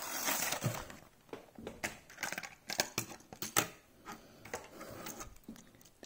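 Plastic toy packaging being opened and a diecast model tractor and trailer pulled out: a rustle of crinkling plastic in the first second, then irregular clicks and taps of plastic and metal parts being handled.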